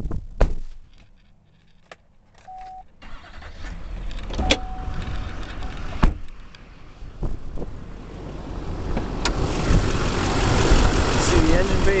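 2006 Chevrolet K3500's 6.6 L Duramax LBZ V8 turbodiesel idling, getting much louder in the last few seconds as the open engine bay is reached. A short chime tone sounds twice in the first five seconds, and there is a sharp thump about six seconds in.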